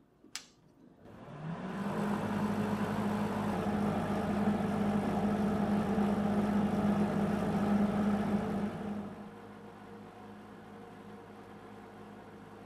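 A Hobart MIG welder switched on with a click of its rocker switch, its cooling fan spinning up with a rising hum and settling into a steady hum with airy hiss. About nine seconds in the level drops and a quieter hum carries on.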